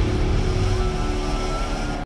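A steady rushing, droning noise with a few faint held tones, slowly fading: the sound-effect tail of a promo's closing logo sting.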